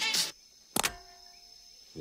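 Song music cuts off abruptly, followed by a single sharp knock with a short ringing tone after it, then a quiet stretch.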